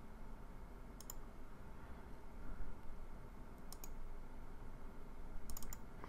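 Computer mouse clicking in a quiet room: single clicks about a second in and near four seconds, then a quick double click near the end, the double click that ends a wire being drawn in the schematic editor.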